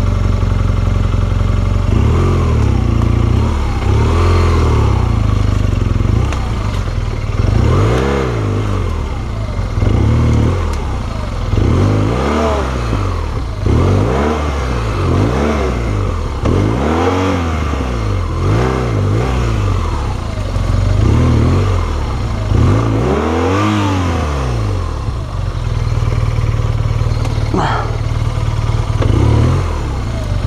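BMW R1200GS boxer-twin engine revved again and again in short throttle bursts, each one rising and falling in pitch, as the bike is worked at low speed over rough ground. Near the end it settles into steady running, and a single sharp knock sounds shortly before the close.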